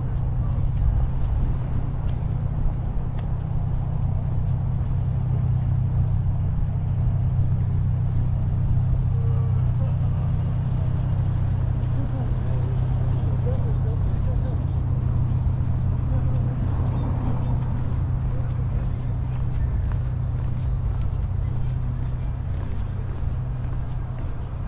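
Steady low rumble of wind buffeting the microphone, with faint voices in the distance.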